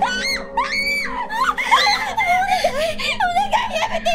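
A woman screaming: two short high shrieks in the first second, then long wavering, sobbing cries. A faint steady drone runs underneath.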